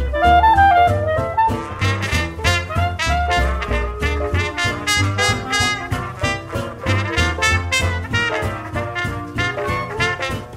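Up-tempo instrumental swing jazz: horns playing melody lines over a steady, even beat.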